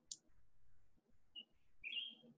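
Faint, short bird chirps over near silence: one brief high note about one and a half seconds in, and a longer, slightly rising one near the end.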